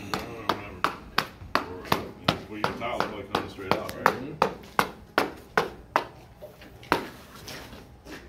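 A hammer striking steadily, about three blows a second, which stops shortly before the end.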